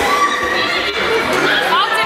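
Children's voices and shouts echoing in a sports hall, with a couple of short, high, rising squeaks near the end.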